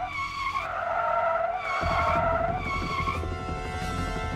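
Car tyres screeching in a skid, a few wavering squeals in a row, with a low engine rumble joining about two seconds in.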